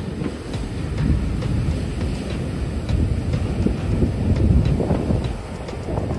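Ocean waves breaking and washing up a sand beach, mixed with wind buffeting the microphone. Together they make a loud, uneven low rumble that swells and eases.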